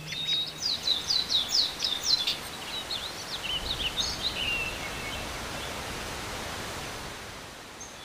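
A songbird singing: a quick run of high, downward-sweeping chirps, about four a second, turning into a varied twitter that stops about halfway through. A steady outdoor hiss runs underneath.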